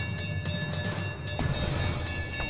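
Brass temple bells ringing, their tones ringing on after repeated strikes, over background music with a low rumbling swell that builds about halfway through.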